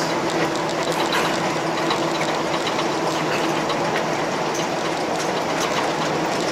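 A car driving at road speed, heard from inside the cabin: a steady mix of engine and tyre road noise with a low, even hum.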